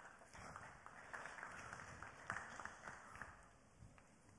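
Faint applause from a small audience: a scattering of hand claps that dies away near the end.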